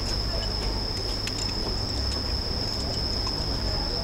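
Insects trilling in one steady, unbroken high note over a continuous low city rumble.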